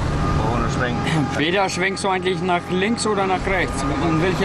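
People talking, words not made out, over a steady mechanical hum from running machinery.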